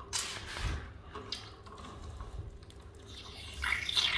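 A flat screwdriver working loose the screw plug on the face of a Wester circulation pump, with a little water dripping and trickling from the plug as it opens. A louder burst of splashing noise comes near the end.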